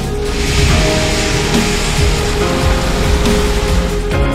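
Electronic background music with a heavy beat, over which a load of stone aggregate pours in a rush from a wheel loader's bucket into a tipper trailer body, starting just after the opening.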